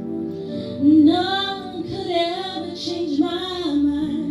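Music: a high voice singing a melody of long, wavering held notes over instrumental accompaniment.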